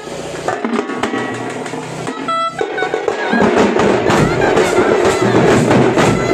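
Tamate frame drums and large bass drums of a street drum band playing. The strokes are looser at first, then from about halfway through they build into a loud, dense, fast rhythm.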